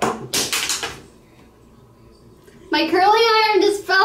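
A young woman's high-pitched, drawn-out vocalizing without clear words, starting in the last third and carrying on past the end. In the first second there are a few short hissy rustles.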